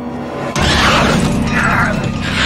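A sudden loud horror-film music stinger hits about half a second in, with harsh rasping shrieks repeating over it every second or so.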